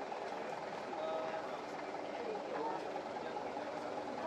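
Chatter of a group of people standing together, several voices talking at once in overlapping conversations.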